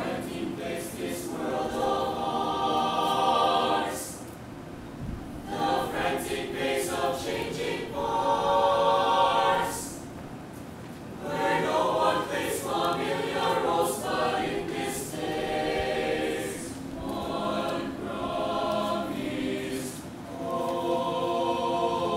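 Mixed choir of men's and women's voices singing a choral song in sustained phrases, with short pauses for breath between phrases.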